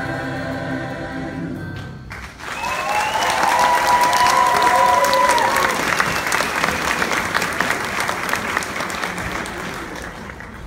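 A choir holds its final chord and cuts it off together about two seconds in; the audience then breaks into loud applause and cheering, with shouts and whoops strongest in the next few seconds before the clapping slowly thins.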